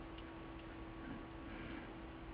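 Faint room tone from the recording microphone: a steady low electrical hum under a quiet hiss, with a few faint ticks.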